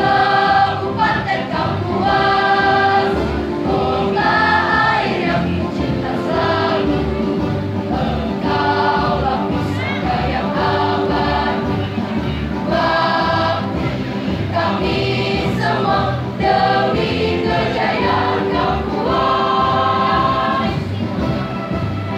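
School choir singing a regional march in unison over instrumental accompaniment with a steady low beat and a sustained held note. The singing stops near the end while the accompaniment carries on.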